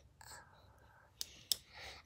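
A child whispering faintly, with two sharp clicks a little over a second in.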